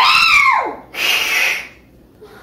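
A domestic cat being carried gives one long meow that rises and then falls in pitch, followed about a second in by a short hiss.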